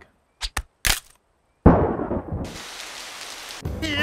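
Cartoon sound effects: two short sharp clicks, then a loud sudden hit about one and a half seconds in that dies away, followed by a rushing hiss that stops shortly before the end.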